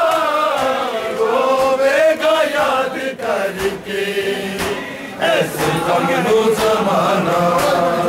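Men's voices chanting a noha, a Shia mourning lament, in unison, drawing out long held lines that slowly rise and fall in pitch. Occasional sharp slaps of hands on bare chests (matam) cut through the chant.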